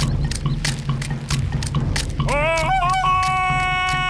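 Jungle-style music with a steady drum beat. About two seconds in, a cartoon character's voice rises into a long held jungle yell, a Tarzan-style call, as he swings on a vine.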